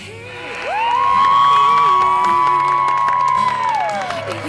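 Crowd cheering, with a group of voices screaming together on one long high note that climbs in the first second, holds, and drops away near the end, over claps and shouts: celebration as the game clock runs out on a win.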